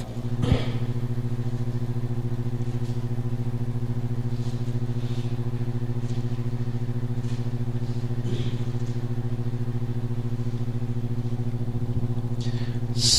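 A steady, unchanging electrical hum with evenly spaced overtones, typical of mains hum in a sound system. Over it come a few faint rustles of thin paper pages being turned.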